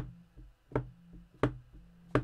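A stamp on an acrylic block being tapped repeatedly onto the edge of an ink pad to ink it up: three sharp taps about 0.7 s apart.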